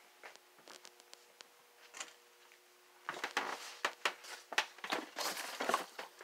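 Rummaging in a cardboard box, with plastic packaging crinkling in a run of rustles from about halfway through. Before that there are only a few light clicks and knocks over a faint steady hum.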